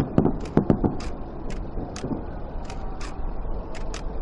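Irregular sharp clicks throughout, with a cluster of dull thuds in the first second, over a steady low rumble.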